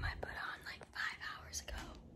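A young woman whispering.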